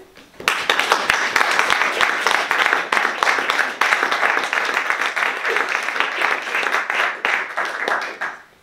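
Audience applauding: many hands clapping at once, starting suddenly about half a second in and dying away near the end.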